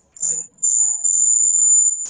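A steady, loud, high-pitched electronic whine on a video-call audio line, starting about half a second in, as a participant's microphone comes off mute, with faint voices beneath it.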